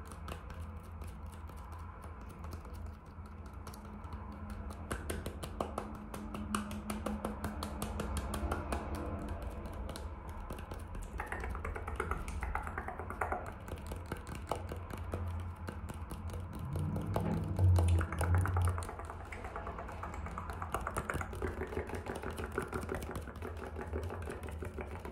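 Fingernails and finger pads tapping fast and irregularly on the skin of an apple: a dense stream of small clicks. There is a louder low thud about three-quarters of the way through.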